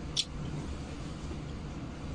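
A steady low hum in a small room, with one short, sharp click of eating near the start.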